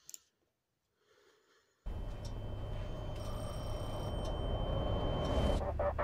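Near silence for about two seconds, then a music video's cinematic intro starts: a low rumbling drone that slowly swells, with a thin steady high tone over it that stops shortly before the song itself begins.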